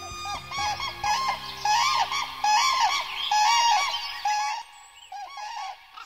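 A pair of common cranes calling together: a rapid run of loud bugling calls that thins out to a few scattered calls after about four and a half seconds.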